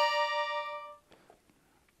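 A Gabbanelli three-row button accordion tuned F–B♭–E♭ holding a two-button right-hand interval on the push (bellows closing). The note sounds steadily and then fades away, ending about a second in.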